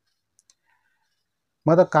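A pause in a man's close-miked speech, nearly silent but for two faint short clicks about half a second in, before his voice resumes near the end.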